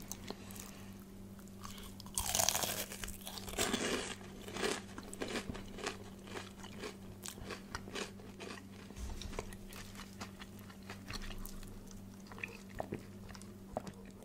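Close-miked biting into crispy KFC fried chicken: loud crunches of the breading about two seconds in and again around four seconds, then a long run of small crackling chewing clicks.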